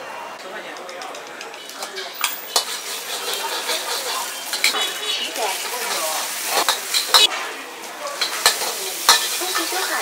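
A metal ladle scraping and clanking against a wok as green pepper and other vegetables are stir-fried, over a steady sizzle. The sharp ladle strikes begin about two seconds in, after a short stretch of quieter street ambience.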